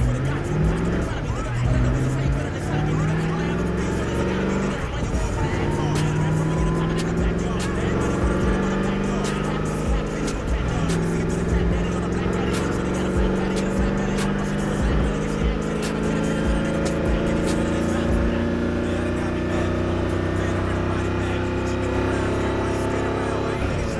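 Supercar engine heard from inside the cockpit, accelerating hard through the gears: its pitch climbs, falls back at each of about three upshifts, then rises slowly through a long higher gear.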